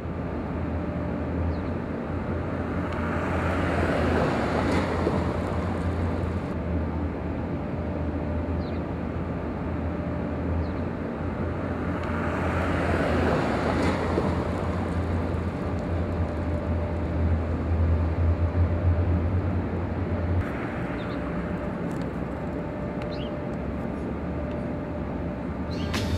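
Street ambience with traffic: a steady low hum that stops about twenty seconds in, with a vehicle passing about four seconds in and another about thirteen seconds in.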